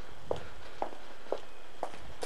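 Footsteps on a city sidewalk at a steady walking pace, about two steps a second.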